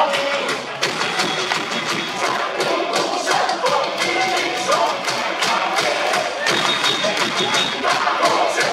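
A stadium cheer song with a steady beat, with a crowd chanting and cheering along.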